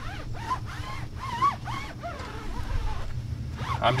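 Foam applicator pad rubbing tire shine onto a rubber tire sidewall in short, rasping wiping strokes. Bird chirps sound in the first couple of seconds over a steady low hum.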